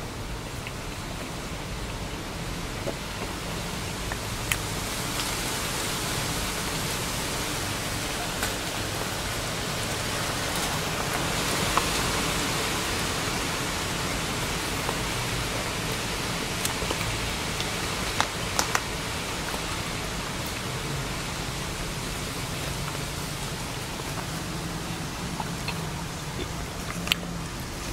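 Steady rushing noise inside a car cabin that swells towards the middle and eases off again, with a low hum underneath and a few faint clicks.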